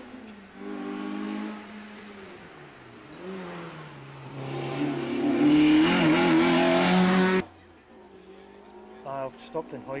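Rally car engine coming up to and through a tight bend, its note wavering up and down with the throttle as it gets louder, then cutting off suddenly about seven seconds in.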